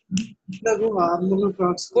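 A man speaking in a lecture, heard over an online call.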